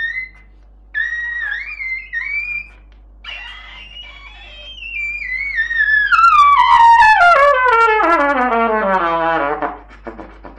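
Trumpet played very high in the upper register: a few short high phrases with brief breaks, then a long gliding run falling all the way down to the low range, stopping just before the end.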